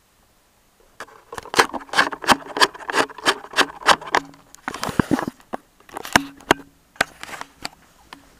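Handling noise from a camera and a hardback book being picked up and moved close together: a quick, irregular run of clicks, knocks and rustles that starts about a second in and lasts until near the end.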